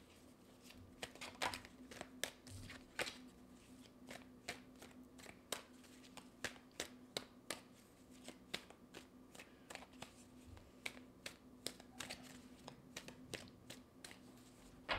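A deck of tarot cards being shuffled by hand: a faint string of short, irregular card clicks, a few a second, with a faint steady hum underneath.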